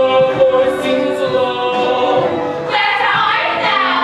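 A chorus of voices singing a show tune over a live pit orchestra, with held, sustained notes.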